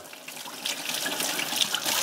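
Kitchen tap running steadily into the sink while vegetables are rinsed under it.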